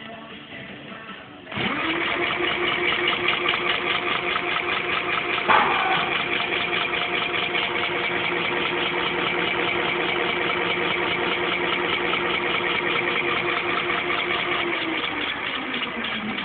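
Crystalyte 5304 electric hub motor, driven by an Infineon controller, spinning the wheel up with a steady whine and a fine rapid pulse. It starts suddenly about a second and a half in and winds down near the end. It is running properly after the hall-sensor wires were swapped to correct its reversed rotation.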